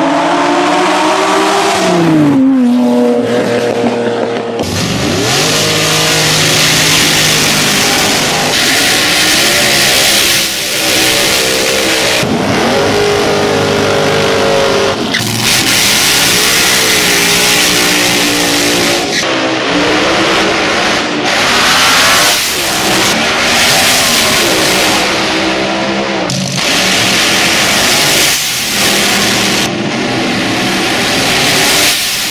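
A Ferrari Testarossa's flat-twelve accelerating hard toward and past, its pitch climbing and then dropping as it goes by. After a cut about four and a half seconds in comes a string of short drag-racing clips: dragster engines revving hard over loud tyre noise from burnouts, with abrupt jumps between clips.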